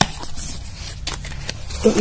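Cardboard cosmetics box being handled and its flap worked open: a few light scrapes and clicks of card, over a steady low hum in the background.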